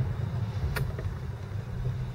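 Car engine running at low speed, heard from inside the cabin as a steady low rumble, with one short click a little under a second in.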